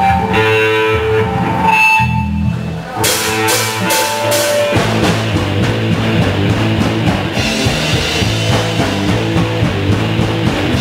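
Live rock band of electric guitars, bass and drum kit playing a song's intro: held guitar and bass notes, then a run of sharp drum hits about three seconds in, and the full band settling into a steady driving beat near the five-second mark.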